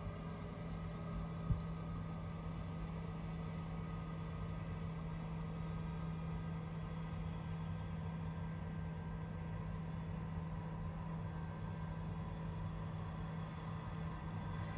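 Farm machinery working a field, its engine giving a steady drone with a low hum, and one short click about a second and a half in.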